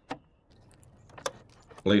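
A sharp plastic click just after the start, then faint rattling and a second, smaller click about a second later, as hands work the plastic retaining tabs of a Jeep Patriot's Totally Integrated Power Module (TIPM).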